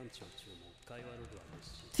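Quiet dialogue in a man's voice from the anime episode's audio. Near the end a woman starts speaking much louder and closer to the microphone.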